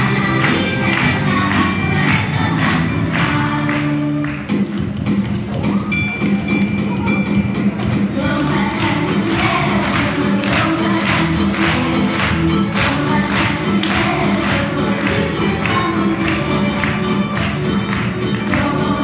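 A Christmas song with a steady beat, sung by a group of young children in chorus. About four seconds in there is a brief dip as the song moves into a new section.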